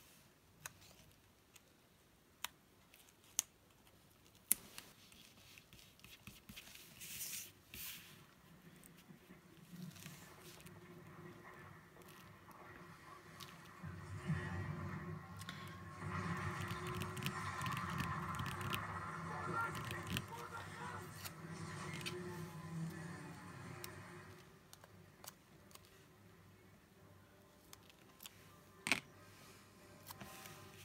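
Light clicks, taps and rustles of paper stickers being peeled and pressed onto a planner page, with a stretch of faint background music in the middle.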